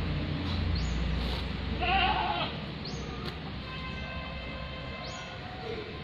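Caged lories calling: a loud, wavering squawk about two seconds in, then a fainter, long, even-pitched call. A low rumble runs under the first half.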